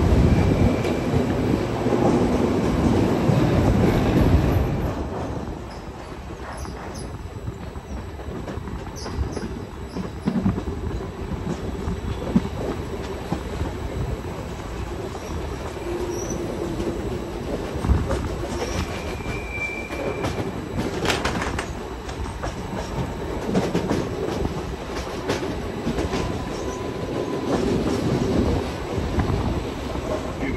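Passenger train rolling slowly out of a station, its carriage wheels rumbling and clicking over rail joints and switches. There are brief high wheel squeals about a second in and again past the middle.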